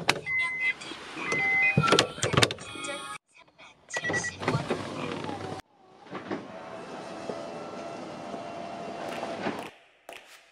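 Honda S2000's electric soft top motor running as the roof folds down: a steady hum for about four seconds that stops near the end. Earlier there are short electronic beeps and clicks.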